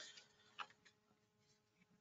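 Near silence: room tone with a faint steady hum and two faint short clicks, the second about half a second in.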